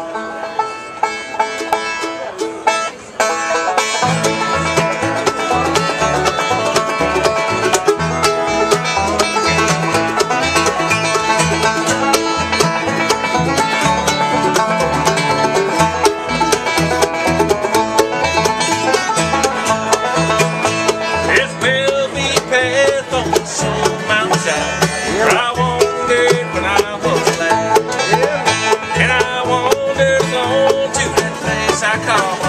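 Live acoustic bluegrass band playing, with banjo picking over guitar and mandolin. An upright bass comes in about four seconds in with a steady pulsing beat.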